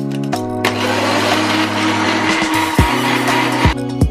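Countertop blender running for about three seconds, whipping milk and coffee into a frothy frappé, starting about half a second in and stopping just before the end, over background music with a steady beat.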